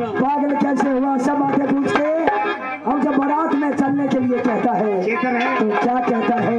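Haryanvi ragni folk singing: a man sings into a microphone in a wavering, bending melody, accompanied by harmonium and steady dholak drum strokes.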